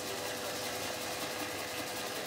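Katsuobushi (dried bonito) shaving machine running with a steady hum and a fast, even whirr.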